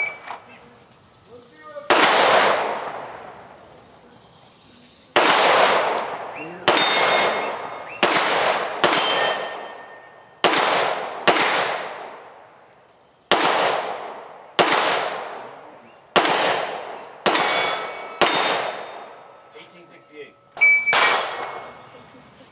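Glock 17 Gen4 9mm pistol firing about a dozen shots at AR500 steel plates, spaced one to two seconds apart with a longer pause after the first. Each report trails off in echo, and several carry the ring of struck steel.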